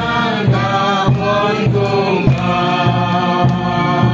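A group of people singing a hymn together, voices holding long notes over a steady beat of a little under two strokes a second.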